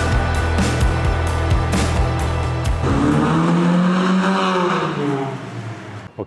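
Background music with a beat, which stops about three seconds in. Then a Honda City Hatchback with a Max Racing aftermarket exhaust and intake drives past, its engine note rising and then falling away as it fades out.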